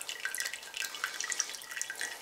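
Wort dripping and trickling out of a mesh bag of spent grain through the holes of a plastic colander into a stockpot of wort, in irregular drips: the sparge draining, with only a little liquid left to come out.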